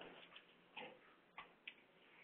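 Near silence with a few faint, brief clicks around the middle.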